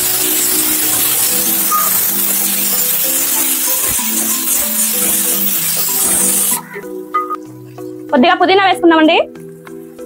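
Chopped onions sizzling as they fry in oil in an aluminium pot, stirred with a wooden spoon, over background music. The sizzling cuts off suddenly about six and a half seconds in, leaving the music and a brief voice.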